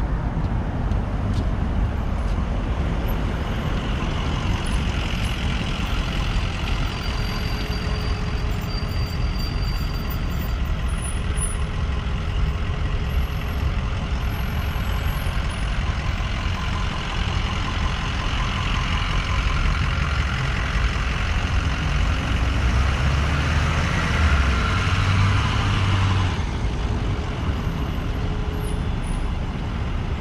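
Road traffic: cars and buses running in slow, heavy traffic, a steady engine rumble and road noise. Near the end the rumble and a hiss grow louder, then the hiss cuts off suddenly.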